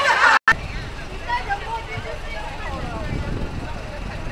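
A brief burst of group voices cuts off suddenly; then a tour coach's engine idles with a steady low rumble under scattered chatter from people nearby.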